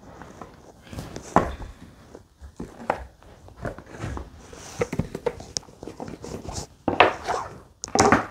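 An oracle card deck being fetched and handled at a wooden desk: irregular soft knocks, taps and rustles of cards and their box, with a louder flurry of card handling near the end.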